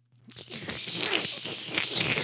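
Cartoon sound effect of a vampire biting into a victim and slurping blood, a rough, wet-sounding noise that starts about a third of a second in and carries on steadily.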